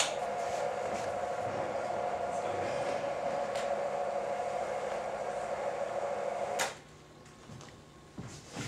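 Electric motor of a motorised projection screen rolling the screen up: a steady hum that starts suddenly and cuts off after nearly seven seconds.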